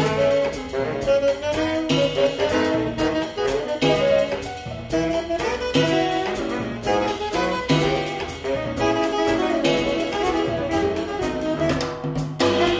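Small jazz group playing: two saxophones on the melody over piano, upright bass and drum kit.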